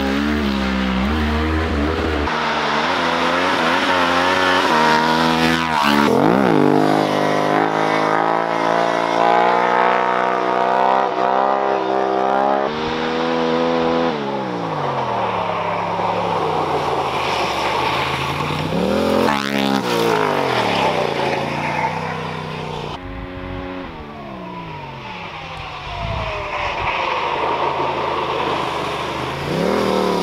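Yamaha Ténéré 700's parallel-twin engine revving hard and changing gear as the bike is ridden past several times, its pitch climbing and dropping through the revs and swooping down as it passes, about six seconds in, around twenty seconds and again at the end.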